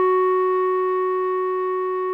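Clarinet holding one long note, written G#4 for B-flat clarinet, and fading slightly, over a low sustained accompaniment note.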